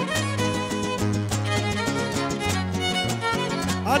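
Huasteco trio playing an instrumental cumbia passage: a violin carries the melody over strummed rhythm strings and a steady, even bass pulse. A singer's voice comes in at the very end.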